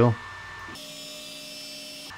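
Stepper motors of a TwoTrees TS2 diode laser engraver jogging the laser head across the bed: a steady whine of several held tones, starting about three-quarters of a second in.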